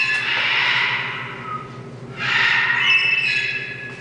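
Scarlet macaw giving two harsh, drawn-out calls, the first right at the start and the second about two seconds later, each fading out.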